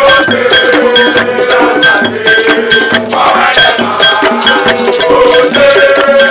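Live Ghanaian drumming and group singing: a hand drum and a ringing, bell-like struck beat keep a fast, even rhythm of about four strokes a second while a crowd of voices sings along.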